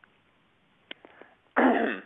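A man gives one short, loud cough about one and a half seconds in, after a pause that holds only a faint click. It comes over a narrow-band web-conference line.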